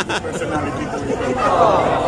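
Conversational speech between an interviewer and a man, and the man laughs near the end.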